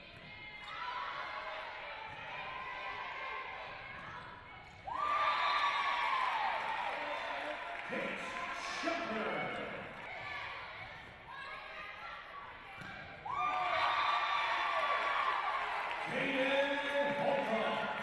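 Indoor volleyball rallies: the ball being struck, with players and benches shouting and cheering in bursts that get louder about five seconds and thirteen seconds in.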